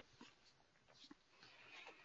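Near silence, with only a faint background hiss.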